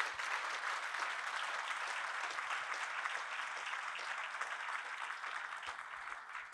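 Audience applauding in a hall, a dense, even clapping that dies down a little near the end.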